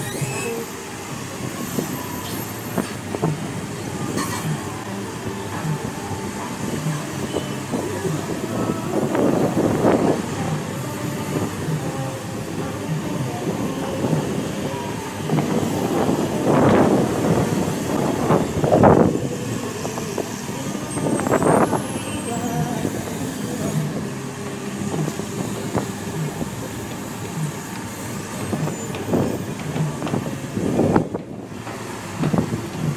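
Diesel engine of an amphibious long-reach excavator running as the boom works, a steady rumble with several louder swells of noise rising and falling, and voices in the background.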